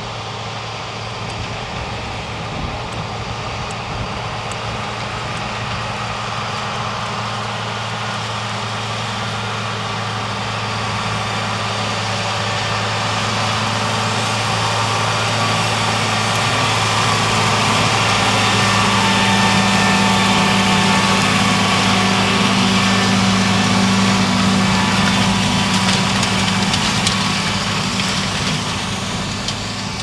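Large four-wheel-drive tractor's diesel engine running steadily as it pulls a strip-tillage toolbar through the soil, growing louder as it comes closer, loudest for several seconds past the middle, then easing off near the end.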